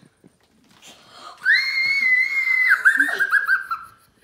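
A young girl's high-pitched scream of delight at the sight of a puppy, starting about a second and a half in and held for about a second, then breaking into a quick run of short gasping squeals.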